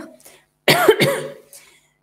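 A woman coughing: one short, loud cough about two-thirds of a second in, fading out within half a second.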